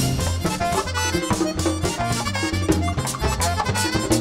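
Live merengue típico band playing an instrumental passage: button accordion leading, with saxophone, a repeating bass line and a fast, steady percussion beat.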